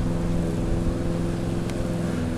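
A steady motor hum, even in level and pitch throughout.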